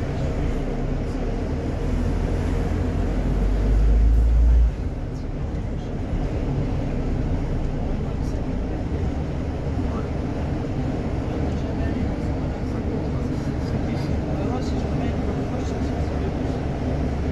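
A bus moving through city traffic: steady engine and road rumble, with indistinct voices. A deep rumble swells over the first few seconds and cuts off suddenly.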